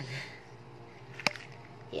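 A single sharp click as the stiff lid of a small hinged jewellery box snaps open.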